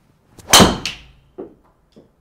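A golf driver striking a ball: one loud, sharp crack about half a second in, ringing briefly, followed at once by a softer second knock and a faint thud a little later.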